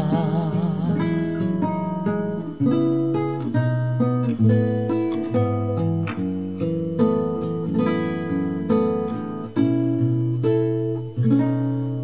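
Instrumental passage of a song on a plucked string instrument with an acoustic-guitar sound, picking a melody over held low notes. A sung note with vibrato trails off about a second in.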